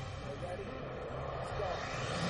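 Stage show sound: a swelling whoosh of noise that grows toward the end, the build-up into an electronic dance number.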